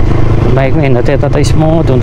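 TVS Raider 125's single-cylinder engine running at a steady cruise under a man's talk, which is the loudest sound.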